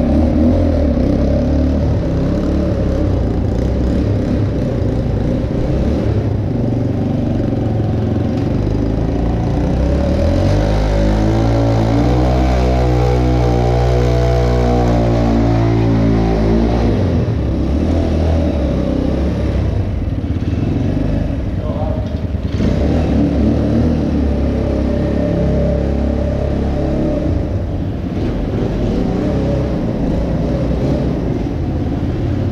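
Kuba TK03 motorcycle's carbureted engine, bored out from 50 cc to about 200 cc, running throughout. Around the middle its note rises and then falls again as it is revved.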